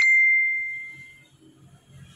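A single bright bell-like ding that starts sharply and rings out, fading away over about a second; a sound effect laid over a cut in the video.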